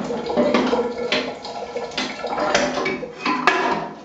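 Plastic door of a Stomacher 400 Circulator paddle blender being fitted back onto the machine: a series of knocks and clicks as the door is handled and slid into place.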